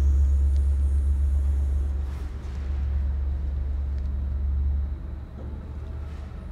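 A low, steady rumble that drops away sharply about five seconds in.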